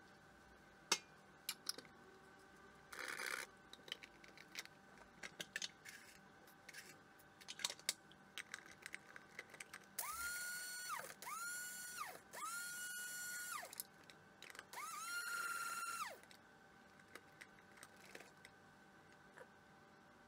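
A small electric motor run in four short pulses, each a whine that rises in pitch as it spins up, holds steady and falls away as it stops. Before it come scattered clicks and knocks of cups and a plastic coffee dripper being handled on the counter.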